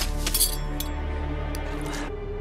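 A few sharp clinks of glass, loudest near the start and then single ones about a second apart, over a low sustained film score.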